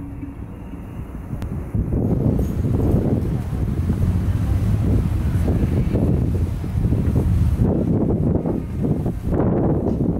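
Wind buffeting the microphone: a low, irregular rumble that grows fuller about two seconds in and keeps rising and falling in gusts.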